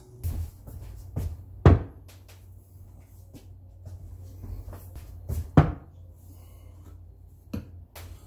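Two glass baking dishes set down one after the other on a wooden cutting board: two sharp knocks about four seconds apart, with a few lighter taps from the handling.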